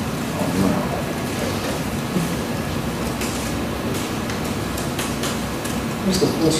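Steady meeting-room background noise with a low hum, faint distant voices and a few light clicks in the second half.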